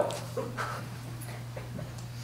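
Quiet pause with a steady low hum and a few faint, brief small sounds.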